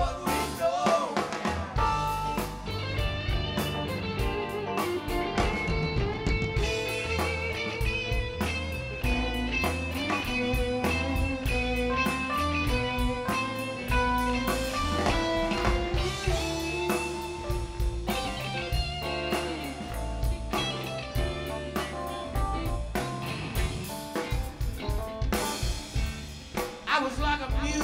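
Live band playing an instrumental passage without vocals: electric guitar lines over a drum kit and bass.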